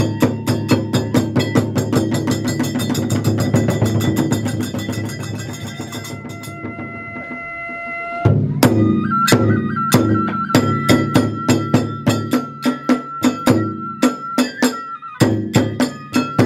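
Kagura hayashi music on drums, small hand cymbals and a transverse bamboo flute. The drum and cymbal strokes speed up into a fast roll, drop away for about two seconds while the flute holds its notes, then come back in hard just after the middle, with the flute holding one long high note.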